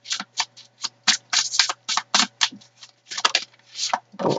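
A tarot deck being shuffled by hand: a quick, uneven run of short card sounds, about four a second.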